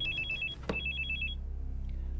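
Phone ringing with an electronic trill that alternates rapidly between two high tones, in two short rings of about half a second each.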